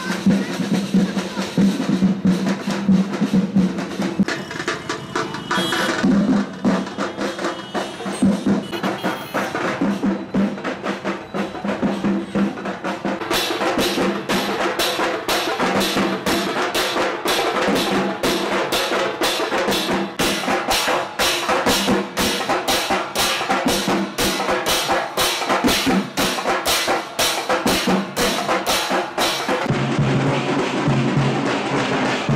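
Processional street drums beating out a loud rhythm, dense at first and settling into a fast, even beat about halfway through.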